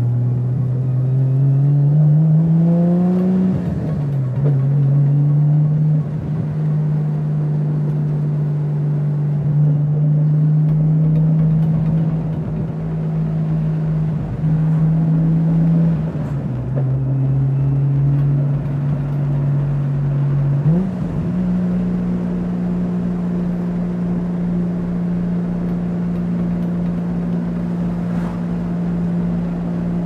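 Nissan Skyline GT-R (R33)'s RB26 twin-turbo straight-six, heard from inside the cabin. It revs up over the first few seconds, then drops on an upshift and runs at steady revs. The revs fall again with another gear change about halfway through and rise to a higher steady note about two-thirds of the way in.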